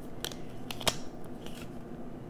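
Tarot cards being handled on a stone countertop: a few light snaps and clicks of card stock, the sharpest just under a second in.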